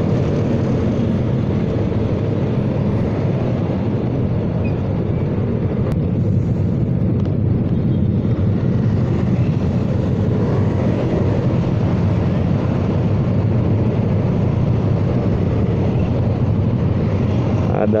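Motorcycle and scooter engines in a convoy, running steadily as the riders slow and wait at a red light: an even low engine rumble with traffic around.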